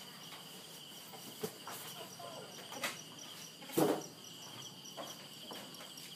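Insects chirring in a steady, high, pulsing chorus, with a few short knocks; the loudest knock comes a little under four seconds in.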